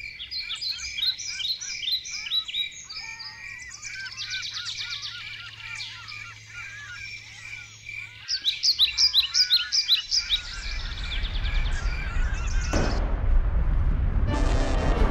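Many birds chirping and singing. About ten seconds in the birdsong gives way to a low rumble that grows louder, with a sudden surge of noise near the end.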